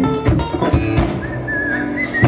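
Live country-rock band playing with electric guitars and drum kit. A high, wavering lead note comes in about a second in.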